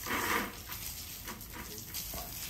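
Handheld high-pressure water gun, fed straight from a garden hose with no pump, spraying a steady jet with a hissing rush of water. The pressure is too weak to move a bucket.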